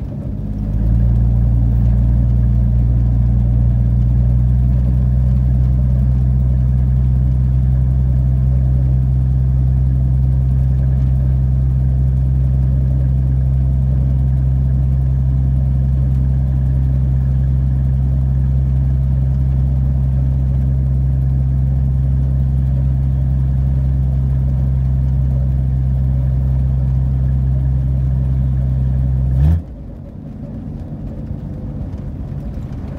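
Inline-six engine of a 1982 Ford F150 droning steadily at an even cruising speed, heard from inside the cab. The pitch rises briefly and settles at the start, and the sound cuts off abruptly just before the end.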